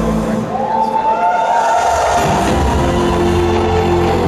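Live music from an arena stage performance. About half a second in, a long note slides up and is held, and a second, higher note joins it shortly after, over sustained lower tones.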